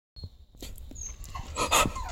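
A man breathing heavily through his mouth as he wakes from a nightmare, ending in a louder sharp breath near the end.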